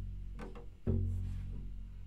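Low notes plucked pizzicato on a double bass's E string, part of a beginner's E-string scale: one note rings on from just before, and a second is plucked about a second in. Each starts sharply and dies away.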